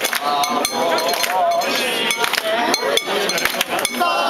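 Repeated metallic clinking and jangling from the fittings of a lantern-hung festival float or portable shrine as it is carried and jostled, over a crowd of bearers' voices shouting and calling.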